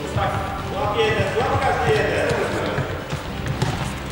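Futsal ball thudding on a sports-hall floor, with players' voices calling across the hall.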